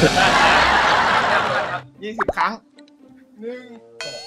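Loud burst of group laughter, several people laughing at once, for about two seconds; it cuts off sharply. A few quieter spoken words and chuckles follow.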